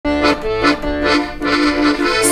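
Piano accordion playing an introduction: sustained melody notes over a bass-and-chord accompaniment pulsing about twice a second.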